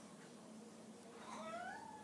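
A cat meowing once, faintly: a single drawn-out call that glides down in pitch, starting about a second in and running to the end.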